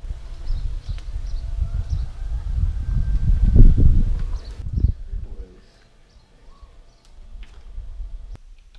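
Wind buffeting the microphone: a low, gusty rumble that swells to a peak and then cuts off suddenly a little over halfway through, leaving a much quieter outdoor background with a few faint high ticks.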